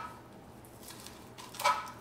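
A knife slicing through a sausage onto a plastic cutting board: a few faint cuts, then one sharp knock of the blade against the board near the end.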